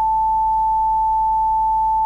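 Steady pure sine-wave tone at 880 Hz, the note A an octave above concert A, generated by a hand-coded C++ software synthesizer.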